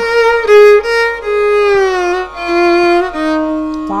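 Violin playing a slow descending Carnatic phrase in raga Bhairavi, gliding from note to note with gamakas and settling on a long held low note near the end.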